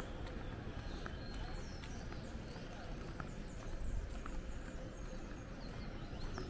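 Quiet outdoor street ambience: a steady low rumble with faint high bird chirps and a few scattered light ticks.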